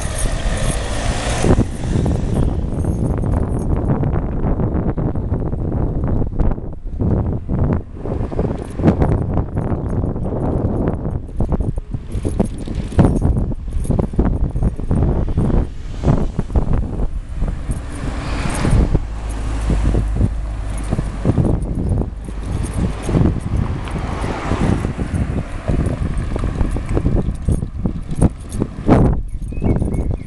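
Wind noise on the microphone and road rumble from a camera riding on a moving bicycle, with frequent irregular knocks and rattles as the bike goes over the street surface.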